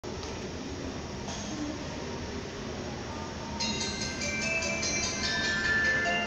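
Steady station background noise, then about three and a half seconds in a platform PA chime melody of clear notes starts. It is the subway station's train-approach signal, played for an incoming train that will not stop.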